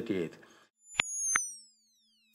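A man's speech breaks off mid-word, then a short electronic logo sting: two sharp clicks about a third of a second apart and a high synthetic tone gliding steadily down in pitch.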